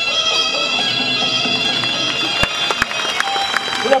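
Traditional Thai Muay Thai fight music led by a pi, the Thai reed oboe, playing a sustained, nasal melody. Two sharp knocks land about two and a half seconds in, less than half a second apart.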